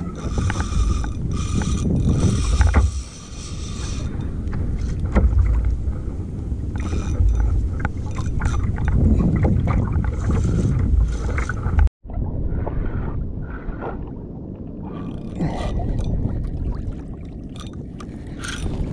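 Wind buffeting an action camera's microphone and water slapping a plastic kayak hull, with the mechanical winding and clicking of a spinning reel cranked under load from a hooked fish. The sound drops out for a moment about twelve seconds in.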